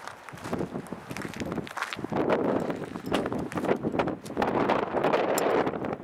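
Wind buffeting the camera's microphone, an irregular rumbling noise that grows louder about two seconds in.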